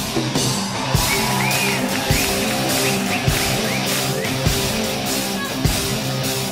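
Live rock band playing an instrumental passage: a steady drum-kit beat under bass and held chords, with a lead electric guitar bending short notes over the top.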